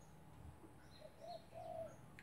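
A dove cooing faintly: two low hooting notes, one about a second in and a longer one near the end, with faint high chirps of small birds around it.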